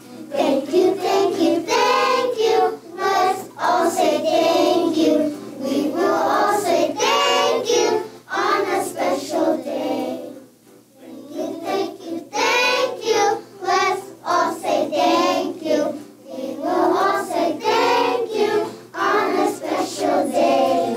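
A class of young children singing together in unison, in short phrases, with a brief break about ten seconds in.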